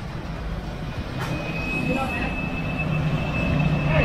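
A nearby motor vehicle running: a steady low rumble, with a faint high whine joining about a second in.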